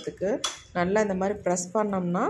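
A steel ladle clinks sharply once against a steel mesh strainer about half a second in, as boiled grated potato is pressed to squeeze out its juice. A voice talks through the rest.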